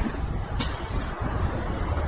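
Steady low rumble of street traffic, with a brief hiss about half a second in.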